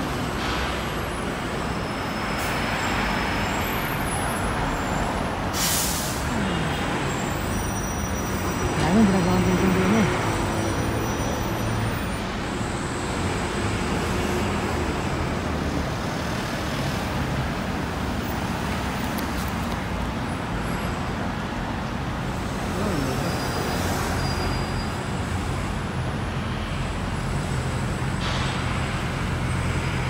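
Steady roar of busy road traffic as a double-decker bus pulls up to the stop, with a short hiss from its air brakes about six seconds in and the engine swelling louder around nine seconds in.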